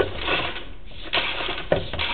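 Sewer inspection camera's push cable and reel clicking and rattling irregularly as the camera is worked into a sewer line, with sharper knocks at the start, about a second in and near the end.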